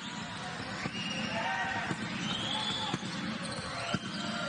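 Live basketball game sound: steady arena crowd noise, with a basketball bouncing on the hardwood court a few times.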